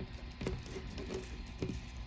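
Sheet of origami paper being folded and pressed flat by fingers: a few faint, short crinkles and taps of the paper.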